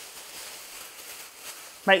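Thin plastic carrier bag rustling faintly as it is handled over a box.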